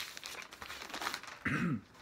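Rustling of a cardboard LP jacket being handled and turned over, then a short throat-clear near the end.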